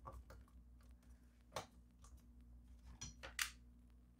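Faint, sparse clicks and taps, about three of them, of hands handling a metal shield plate over a TV's circuit boards, over a faint low hum.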